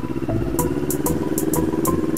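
CFMoto 400NK parallel-twin motorcycle engine running at low road speed with a steady note that rises slightly. Music with a regular drum beat plays along with it, its high cymbal-like ticks coming in about half a second in.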